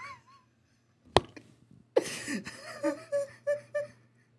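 A man's laughing fit, mostly silent at first: a wavering tone fades out at the start, a sharp knock comes about a second in, then a run of short, wheezy laugh bursts, about three a second.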